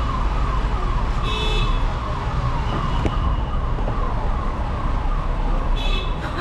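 An electronic siren repeating a falling tone about twice a second over steady street traffic, with a short vehicle horn honk about a second in and another near the end.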